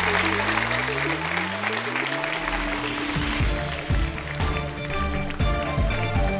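Audience applause with outro music coming in over it: slowly rising tones for the first two seconds or so, then music with a steady beat of about two strokes a second from about three seconds in.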